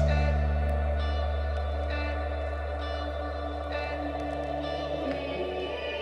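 Worship band playing the slow instrumental intro to a song: keyboard chords struck every second or two over a long held low bass note, gradually fading, with no singing yet.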